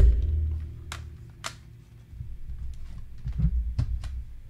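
Plastic CD jewel cases being handled and shuffled close to the microphone: a heavy thump at the start that leaves a brief low ringing, two sharp plastic clicks about one and one and a half seconds in, and a few more dull bumps near the end.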